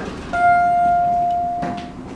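A click as the elevator's hall call button is pressed, then a single chime tone from the Otis Series 4 hall fixtures that rings for about a second and a half and slowly fades: the car answering the call at this floor.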